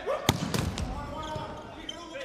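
A volleyball struck hard once, about a third of a second in, followed by a few fainter knocks, over the background noise of an indoor arena.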